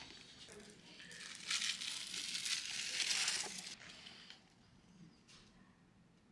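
Crinkling and rustling, as of packaging being handled, loudest from about one second in until nearly four seconds in, then dying away.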